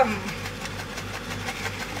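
A spatula stirring and scraping thick sambal in a wok, with small irregular clicks and scrapes, over a steady low machine hum.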